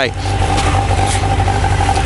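Motorcycle engine idling steadily, a low even rumble with a steady hum above it.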